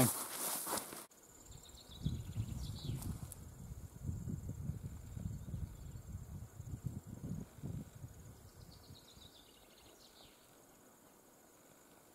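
Outdoor ambience in open bush: irregular low gusts of wind on the microphone, a steady faint high insect drone, and short falling bird calls a few seconds in and again near the end.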